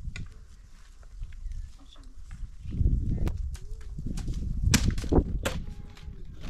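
A run of sharp snaps or cracks, about five, the loudest in the second half, over a low rumbling handling noise.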